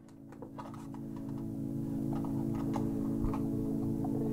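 Ambient music fading in: a sustained low drone chord swelling steadily louder. Irregular light ticks and clicks sound over it through the first three seconds.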